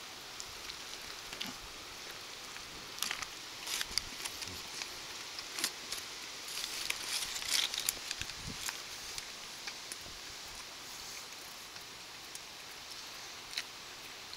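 Faint chewing of a mouthful of burger, with soft crinkles of the foil wrapper and scattered small clicks.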